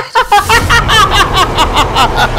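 A man laughing in quick, short breaths, about six a second.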